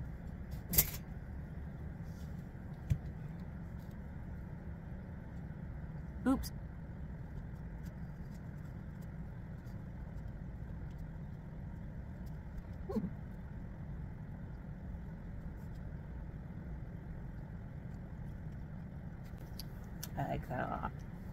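A steady low background rumble, broken by a few sharp clicks (the loudest about a second in) and two short hums from a voice, around a third and two-thirds of the way through.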